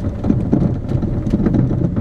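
A car driving slowly over a rough, stony dirt road, heard from inside the cabin: a steady low rumble of engine and tyres with irregular knocks and rattles as it goes over the bumps.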